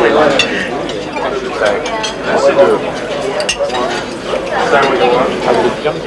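Indistinct voices of several people talking, with scattered sharp clinks among them.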